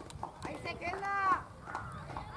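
Young voices shouting and calling out across an open field, several short high-pitched calls, the loudest about a second in.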